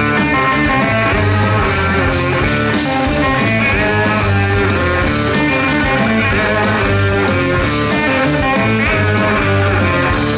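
A live blues-rock band playing an instrumental passage: two electric guitars over drums.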